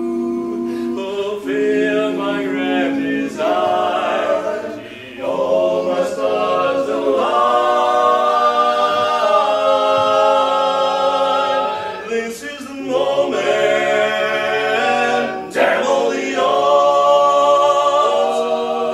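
Male barbershop quartet singing a cappella in close four-part harmony, holding long chords with brief breaks between phrases about five, twelve and fifteen seconds in.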